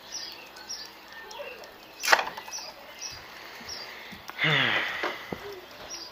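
Quiet outdoor background with faint, short bird chirps. There is a single sharp knock about two seconds in and a brief wordless vocal sound from a person, falling in pitch, about four and a half seconds in.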